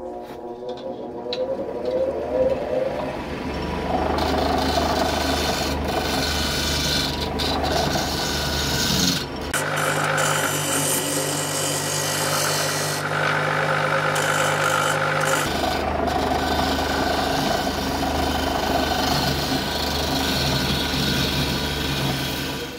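Wood lathe motor spinning up, its hum rising in pitch over the first few seconds, then a steel scraper held against the spinning segmented maple blank, a steady rasping scrape over the motor hum. This is the smoothing pass that follows roughing with the gouge.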